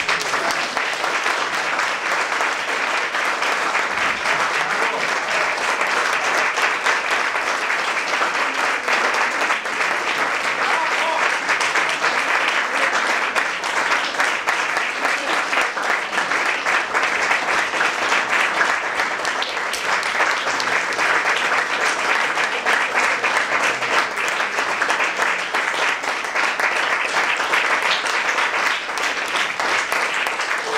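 Audience applauding: a steady, dense clapping.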